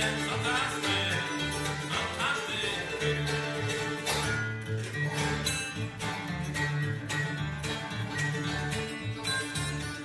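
Bluegrass band playing live: banjo, mandolin and guitar picking over a steady line of upright bass notes, with the fiddle bowing along.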